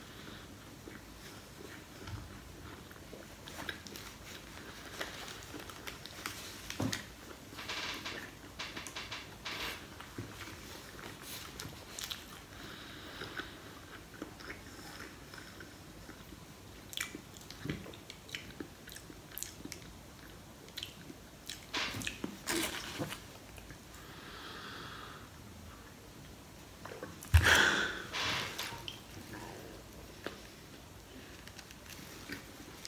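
A person chewing a soft sandwich roll of bread and peppers, with wet mouth clicks and smacks. A louder bite comes near the end.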